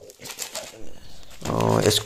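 Kitchen knife cutting through bubble wrap around a small cardboard box, the plastic crackling in short scattered bursts; about a second and a half in, a man's voice starts with a drawn-out sound.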